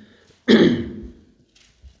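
A man clears his throat once: a single short, rough burst about half a second in.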